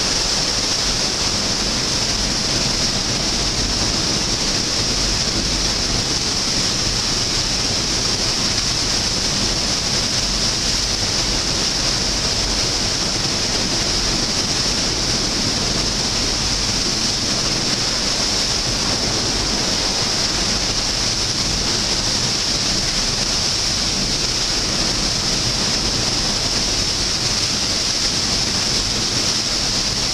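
Large waterfall in a narrow rock canyon pouring with steady, unbroken rushing roar; the flow is high, "big water".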